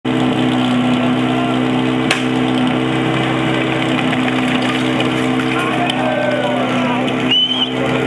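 Portable fire pump engine running steadily at high revs, with voices of the team and onlookers shouting over it and a sharp click about two seconds in.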